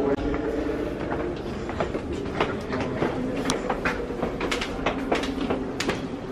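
Footsteps on a hard stone floor: irregular sharp clicks and taps, two or three a second, building after the first second over a low background hum.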